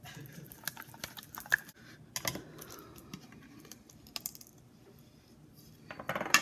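Metal paint can being handled and set down on a plastic-covered table: a scatter of sharp clicks and knocks, the loudest about one and a half and two seconds in.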